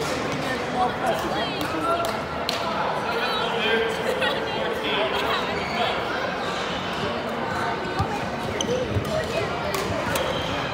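Badminton play on a wooden gym court: several sharp racket hits on the shuttlecock and sneakers squeaking, over background chatter in a large hall.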